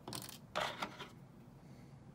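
Two brief bursts of handling noise as hands set down felt plush pieces and take up a small pair of scissors on the work table. The second burst is the louder and holds a sharp click.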